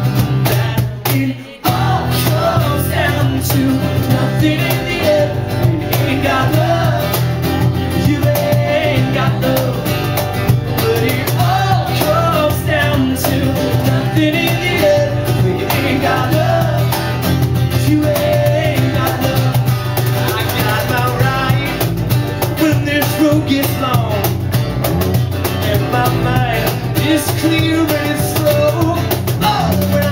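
A live rock band playing a song, with electric guitar, bass and drum kit, the sound dipping briefly about a second in before the band carries on.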